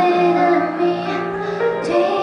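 A woman singing a pop ballad live into a microphone with grand piano accompaniment, holding long notes.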